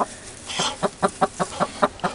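Hen clucking: a quick run of short clucks, about five a second, starting about half a second in.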